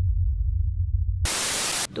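Edited-in sound effects: a loud, deep rumble that cuts off about a second in, then a short burst of static hiss lasting about half a second.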